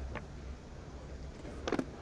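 A low, steady hum with a faint short sound about a quarter second in and a brief sharp click-like sound near the end.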